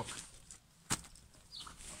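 A packed one-man tent being taken out of its carry bag: quiet handling with one sharp click about a second in.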